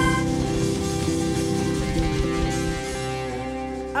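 Live band with accordion, electric bass and drums holding one sustained chord. The drum strokes stop a little before three seconds in, and the held chord slowly fades as the song ends.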